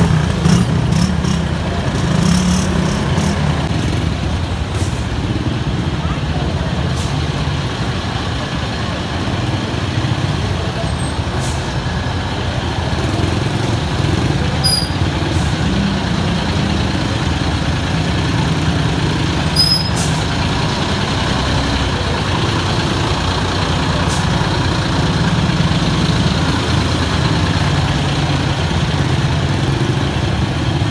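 A large bus engine idling close by, a steady low rumble, with people's voices mixed in around it.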